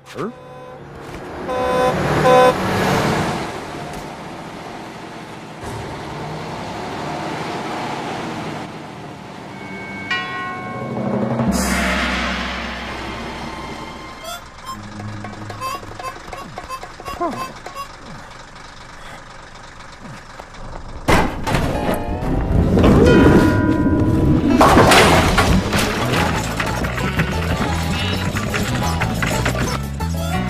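Cartoon soundtrack: background music mixed with sound effects and wordless character voices. It starts abruptly out of silence and grows louder about two-thirds of the way in.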